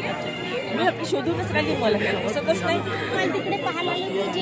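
Several people talking at once close by: the chatter of a crowd of guests, with no one voice standing out.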